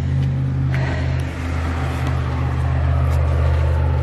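Car engine idling: a steady low hum that holds at one level throughout.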